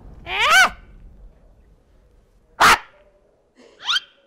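A short, high-pitched, bark-like yelp, then a single sharp crack about two and a half seconds in, and a quick rising yelp near the end, from the cartoon's soundtrack.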